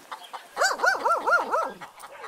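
A dog yelping: a quick run of five short yips, each rising and falling in pitch.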